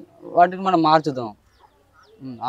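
A man's voice saying one short phrase of about a second, then a pause.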